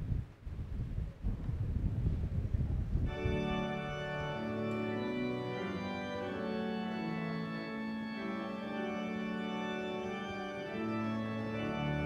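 Church organ starts the introduction to a hymn about three seconds in, playing held chords that change in steps, with a deep bass note coming in near the end. Before it there is low rumbling noise.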